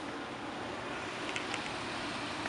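Steady rushing background noise, with a few faint clicks about one and a half seconds in.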